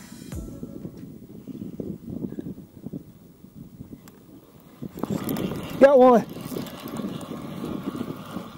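Low rumbling wind and water noise on a kayak-mounted camera's microphone. About five seconds in it grows louder, and near six seconds a short vocal exclamation rises and falls in pitch.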